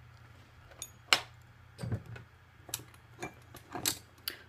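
About six sharp, irregular clicks and clinks of metal leather-tooling tools knocking against a granite countertop, the loudest about a second in.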